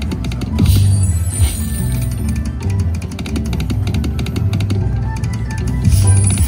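Slot machine game music with drums and a heavy bass beat while the reels spin, with a rapid run of ticks through the second half.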